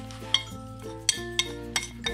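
Wooden chopsticks clicking and scraping against a porcelain plate as herbs are pushed off it into a pot, a few sharp clicks, over background music with a melody.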